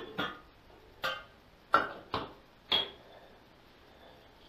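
A stainless steel pot and its glass lid being set down and handled on a granite countertop: about six sharp clanks and knocks over three seconds, the last with a brief metallic ring.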